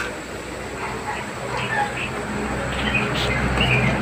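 A low steady background rumble that slowly grows louder, with scattered short high chirps, like small birds, over it.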